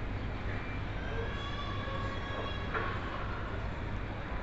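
Steady hypermarket background noise with a constant low hum, faint thin whining tones drifting in over the middle, and a single click a little before three seconds in.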